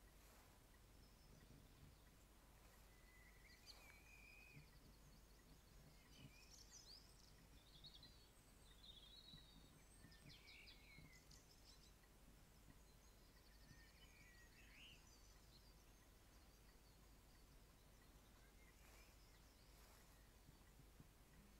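Near silence with a low steady hum, broken by faint, high bird chirps and quick twittering calls from a few seconds in until about three quarters of the way through.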